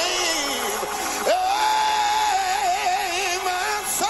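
Gospel music with a singing voice: a phrase slides down, then about a second in a long note is held, wavering in pitch.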